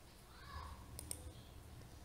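A couple of faint computer mouse clicks about a second in, over quiet room tone.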